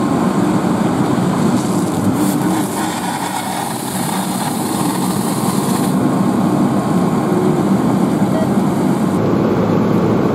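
Pierce fire engine's diesel engine running steadily, with a hiss from about two to six seconds in.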